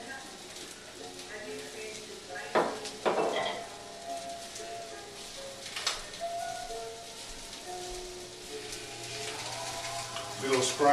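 Sausages and oil sizzling in a frying pan, a steady hiss, over faint background music, with a few short knocks of pans being handled about two and a half, three and six seconds in.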